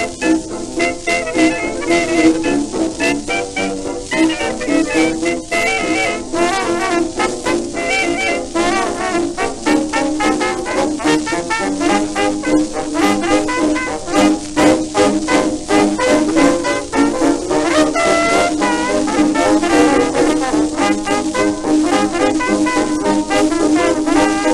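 A 1920s dance orchestra playing an instrumental foxtrot passage from a Harmony 78 rpm record, with ensemble playing over a steady dance beat.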